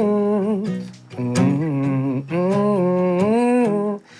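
A man singing wordless, drawn-out vocal notes, one long gliding phrase after another, as the opening of a soft acoustic-guitar song.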